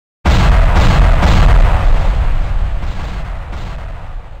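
A sudden, loud booming impact sound effect with a deep rumble, followed by several further hits about half a second apart, slowly fading.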